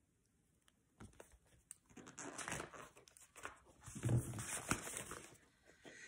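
Rustling and small knocks of a large hardcover picture book being handled and lowered, beginning about a second in.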